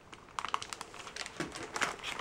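Plastic candy packets and wrappers crinkling and rustling as they are handled in a cardboard box: faint, irregular small crackles and clicks.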